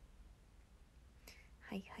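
Near silence with a faint low hum, then near the end a young woman softly says "hai, hai".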